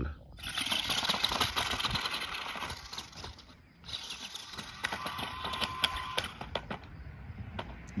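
Spin Master All-Terrain Batmobile RC truck driving over gravel: a steady crunching hiss of tyres on stones with scattered clicks of gravel. The sound dips briefly about three and a half seconds in, then carries on.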